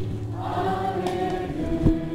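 Worship music with voices singing together over held chords.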